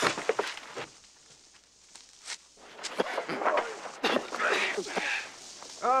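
Men scuffling on rough ground: footsteps and sharp knocks, with strained grunts and shouts about halfway through.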